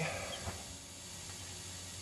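Faint, steady background hiss and hum with one brief high chirp near the start: California ground squirrels cheeping.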